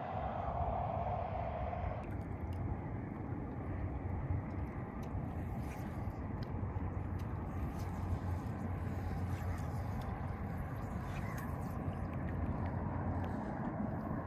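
Kayaks being paddled across a calm, shallow saltwater flat: steady water and paddle noise with a low rumble, and a few faint light splashes or ticks.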